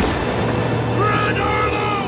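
Film sound mix of a flash flood: a sharp crack at the start, then a steady low rumble of rushing floodwater, with a voice calling out from about a second in.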